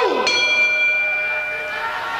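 Ring bell struck once, about a quarter second in, signalling the start of the round; its ring dies away slowly.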